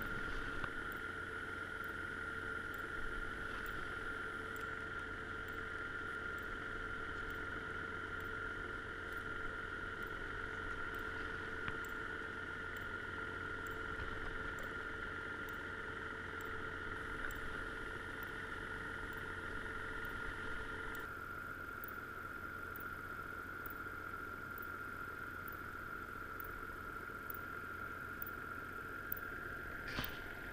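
Steady hum of a boat engine heard underwater, with a constant high tone over a low drone; a lower tone drops out about two-thirds of the way through.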